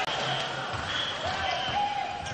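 Basketball game sound in an arena: steady crowd noise with a ball bouncing on the court.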